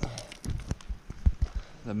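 Irregular thumps and crunches from a handheld camera being carried over a gravel road: footsteps on gravel mixed with handling knocks on the microphone.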